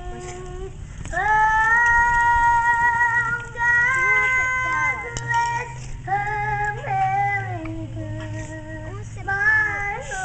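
A young girl singing a patriotic song over low accompaniment. She holds a long high note from about a second in until about four seconds in, then sings shorter phrases.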